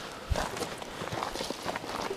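Footsteps of several people walking on a dirt trail: irregular crunching steps, with a heavier thump about a third of a second in.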